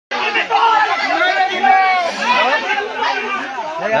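Several people talking at once, their voices overlapping in continuous chatter.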